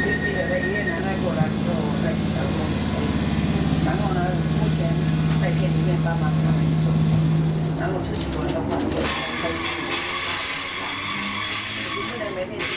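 Class 317 electric multiple unit heard from inside the carriage, running with a steady low hum under passengers' chatter. About nine seconds in the hum drops away and a steady hiss takes over.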